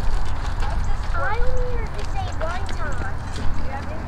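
Distant, indistinct voices of players and spectators around a youth baseball field, over a steady low rumble.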